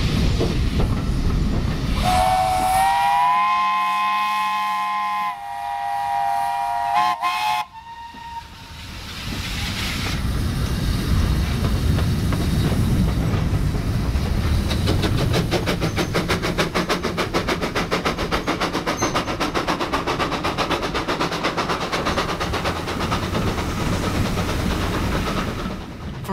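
The chime whistle of an LBSCR Terrier tank engine sounding one long blast of about five seconds, several notes together as a chord. After it comes the even, quickening beat of a steam locomotive's exhaust as it pulls away.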